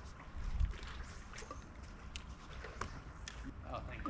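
Low wind rumble on the microphone, swelling briefly about half a second in, with a few faint sharp clicks scattered through it.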